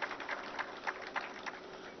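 Faint background noise of an outdoor gathering, a low even hiss with a few scattered light clicks.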